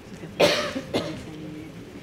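A person coughing: one loud, sharp cough about half a second in, followed by a weaker one about a second in.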